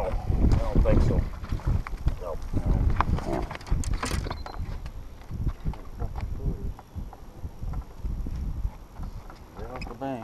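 Wind rumbling on the microphone, loudest in the first two seconds, with short bits of low voices in the first few seconds and scattered light clicks and knocks.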